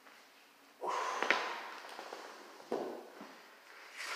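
Dumbbells set down after a set of presses: two sharp knocks about a second and a half apart, amid rustling noise.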